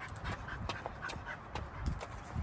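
A five-month-old Rottweiler puppy panting in short, quick breaths; she is nervous out in public.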